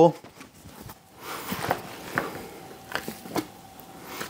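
Ground sausage meat being packed down by hand into the stainless steel canister of a vertical sausage stuffer: a soft squishing from about a second in, with a few light clicks.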